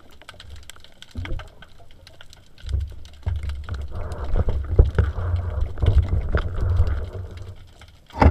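Underwater sound picked up by a submerged camera: a low rumble of water moving past the housing, louder from about three seconds in, with many small clicks and crackles throughout.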